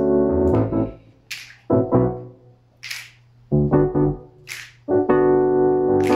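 Roland FP-4 digital piano playing chords in groups with short gaps, moving into a held chord near the end. Crisp finger snaps fall in time about every one and a half seconds.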